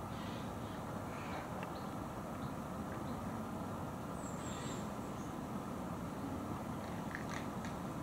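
Steady low rushing background noise, with a few faint, brief high bird chirps scattered through, including a quick run of three about four seconds in.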